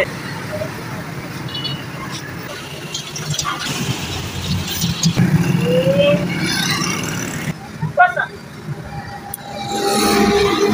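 Road traffic running past, louder through the middle few seconds, with scattered voices talking in the background.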